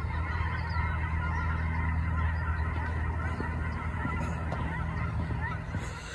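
A large flock of geese flying overhead, many birds calling at once in a dense, continuous chorus over a steady low rumble. It fades out near the end.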